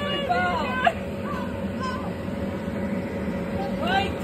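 Steady hum of an inflatable bounce house's electric blower running, with voices talking over it in the first second.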